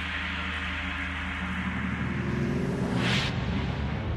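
Electric winch machine of a fortress inclined lift running: a steady motor hum with a rising whine shortly before three seconds in, and a short hissing burst just after it.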